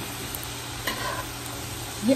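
Shredded cabbage and bacon frying in a pot, sizzling steadily while being stirred, with a couple of faint clicks from the stirring.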